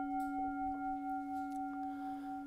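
Metal Buddhist singing bowl ringing on after a single strike, several clear tones held steady with a slow, even waver.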